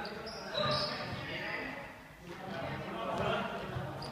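Small juggling balls dropping and bouncing on a hard sports-hall floor, with people's voices.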